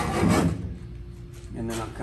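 A few quick, scratchy strokes of a marking tool drawn across the sheet-metal wheel tub, marking rough trim lines; the scratching stops about half a second in.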